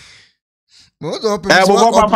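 A person speaking, with a brief breath and a pause of under a second before the talking carries on about a second in.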